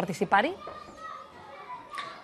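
A voice speaking for about half a second, then a quieter stretch with only faint background voices.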